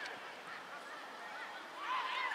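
Faint, high-pitched shouts of young footballers calling across the pitch, with a louder call rising near the end.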